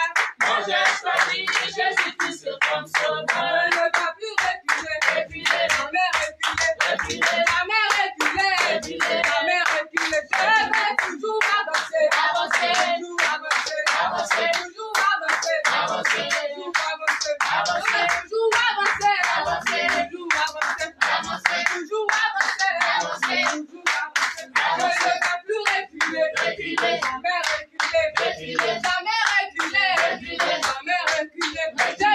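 A group of worshippers singing together while clapping their hands in a steady rhythm, the claps sharp and evenly spaced under the voices throughout.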